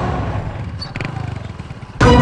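Motorcycle engine running low and steady, fading over the two seconds with a quick flutter, and a light click about a second in.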